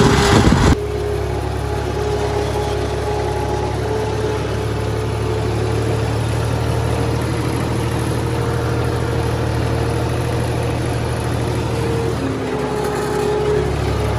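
Farm tractor's diesel engine running steadily under load while pulling a disc ridger through soil, heard from the driver's seat as an even drone. A louder, rougher noise at the very start cuts off abruptly less than a second in.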